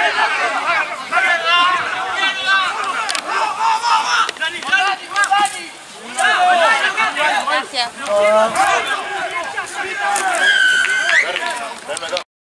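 Many voices shouting over one another: rugby players calling on the field and spectators yelling, with one long held call near the end.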